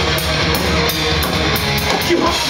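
Live heavy metal band playing an instrumental passage: electric guitars, bass and drum kit, with cymbal strokes repeating about three or four times a second and no vocals.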